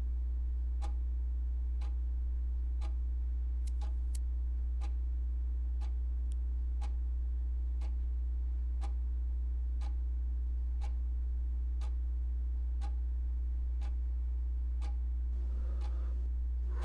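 A clock ticking evenly, about one tick a second, over a steady low hum.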